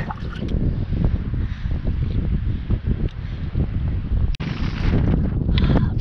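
Wind buffeting the microphone: a steady low rumble, cut off for an instant about four seconds in.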